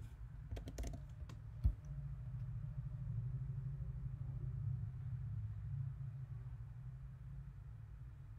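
A few computer keyboard key presses in the first two seconds, the last one the sharpest, then a steady low background hum.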